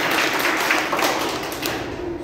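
Applause: many hands clapping together, fading slightly toward the end.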